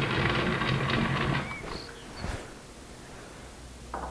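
Metalworking lathe running steadily, then switched off and running down about a second and a half in. A light knock follows.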